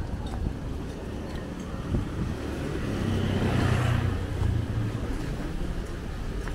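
A motor vehicle's engine passing nearby in a narrow street, its hum swelling from about three seconds in and fading a couple of seconds later, over steady street noise.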